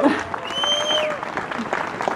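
A crowd clapping with dense, irregular hand claps, and a brief held note from the crowd, a shout or whistle, about half a second in.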